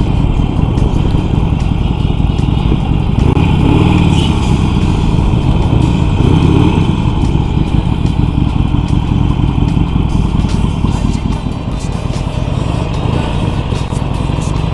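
Harley-Davidson Sportster 883's air-cooled V-twin engine running at low speed and idling, with a steady low throb.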